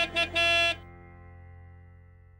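A vehicle horn sound effect: two short toots and then a longer one about half a second long, over background music that fades out.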